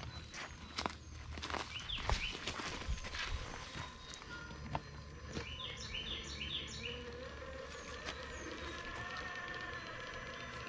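Scattered knocks and rustles in the first few seconds, from an RC crawler's tires on wooden planks and footsteps in dry leaf litter. About halfway through comes a quick run of about five bird chirps.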